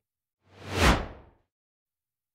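A single whoosh transition sound effect that swells and fades within about a second, with a low thud at its peak. It marks a cut between screens.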